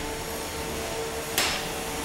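Spinning weapons of two 3 lb combat robots, an undercutter and a drum spinner, whining at a steady pitch, with one sharp metal-on-metal hit about a second and a half in as the weapons meet.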